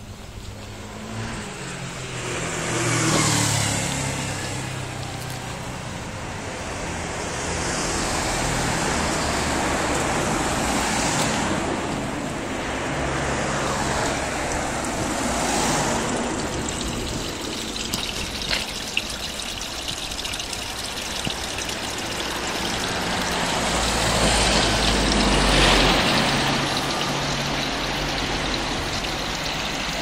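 Cars driving past on a street one after another, each swelling and fading away, over a steady wash of road traffic noise.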